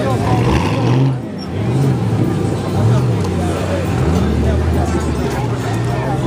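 Ford Mustang V8 engines running as the cars pull away, the pitch rising and falling with several revs. People talk in the background.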